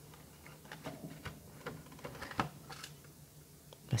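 Thin clear plastic cover sheet being peeled off a plastic packaging tray by its pull tab: a scatter of small clicks and light rustles, the loudest about two and a half seconds in.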